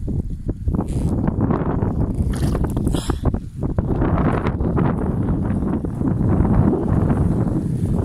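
Wind buffeting the microphone: a loud, ragged, steady rumble.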